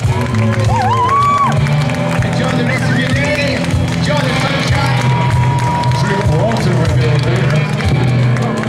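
Live band playing through a PA: acoustic and electric guitars over a steady low bass, with a lead line that slides up about a second in and holds one long note near the end.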